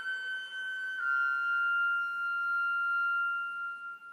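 Solo concert flute holding a long high note that steps down slightly about a second in, then sustains the lower note and fades near the end.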